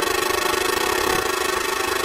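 Electronic dance music in a house/guaracha DJ mix: a sustained buzzy synthesizer chord held steady over a fast pulsing ripple.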